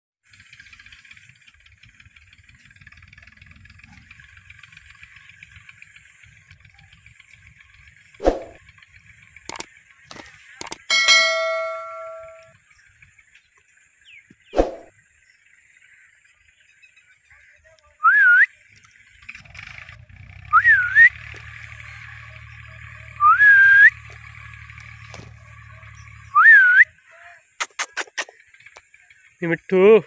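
Indian ringneck parakeet calling: a few sharp separate calls, then four short rising whistles a few seconds apart. A steady high background buzz runs throughout, and a low drone is heard between the whistles.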